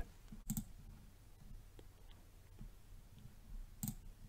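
Two faint computer mouse clicks, one about half a second in and one near the end, over quiet room tone.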